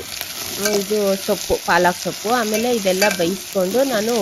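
Sliced onions sizzling in hot oil in a metal pot while a spatula stirs them, the spatula scraping the pot with repeated short, wavering squeaks.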